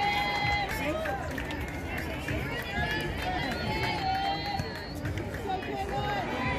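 Many voices talking and calling out at once around a softball field: spectators' and players' chatter, with no single voice standing out.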